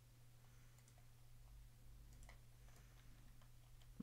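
Near silence: a few faint, scattered clicks of a computer mouse and keyboard over a low steady hum.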